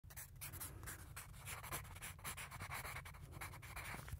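Pencil writing on paper: quick scratchy strokes, with a few longer drawn-out strokes in the second half.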